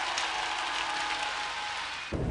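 A large arena audience applauding, a dense even clatter of many hands that eases slightly near the end.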